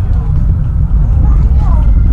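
Loud, low, rough rumble of a SpaceX Falcon Heavy rocket climbing away, heard from a distance.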